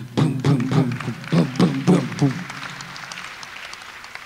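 A man's voice imitating a racing heartbeat: a quick, even run of low 'boom' sounds, about four a second, stopping about two seconds in and fading out.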